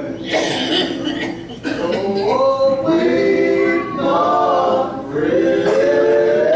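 Male vocal trio singing a gospel song in harmony, the voices moving together and holding chords.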